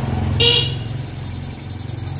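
Electronic fish shocker (16-FET, two-transformer) buzzing steadily while pulsing at low frequency, with a fast, even clicking over a low hum. A brief high-pitched toot about half a second in is the loudest sound.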